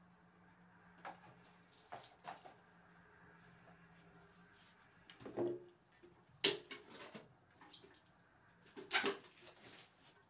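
Kitchen handling noise: jars and metal-lidded canisters picked up and set down on the counter, a string of separate knocks and clinks. The loudest come about six and a half and nine seconds in.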